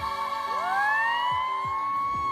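A children's choir of girls holding a long high sung note, the voices sliding upward into it about half a second in, over backing music with a few low beats.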